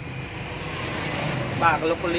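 A steady low engine hum, like a vehicle idling, with a man's voice starting briefly near the end.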